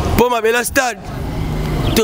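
A man's voice speaking one short phrase over street traffic. In the pause after it, a motor vehicle's engine hums steadily and low.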